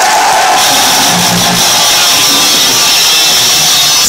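Rock concert crowd cheering over the band's amplified stage sound, with a steady high ring coming in about half a second in.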